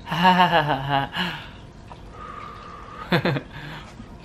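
A person's laughter and drawn-out vocal sounds in the first second, then a short falling vocal sound a little after three seconds in.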